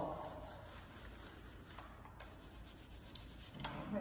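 Flock paint roller rolling glaze across a painted wall: a soft, quiet rubbing hiss, with a few faint ticks.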